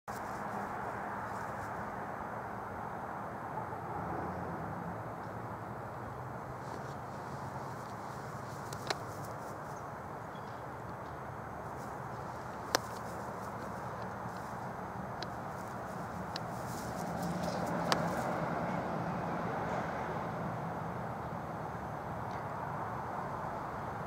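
Steady, even outdoor background noise with three sharp clicks spread through it and a slight swell a little before the end. The moving light in the sky makes no sound that can be heard.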